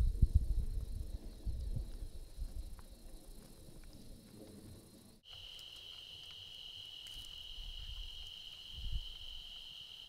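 Low, gusty rumbling of wind on the microphone, dying away over the first few seconds. About halfway through, a sudden switch to a cricket's continuous high trill, with a few faint crackles from a campfire.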